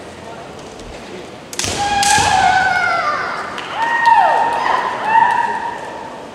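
A sharp smack as a kendo attack lands, then long, loud shouted kiai from the fencers lasting about four seconds, with a falling cry near the end.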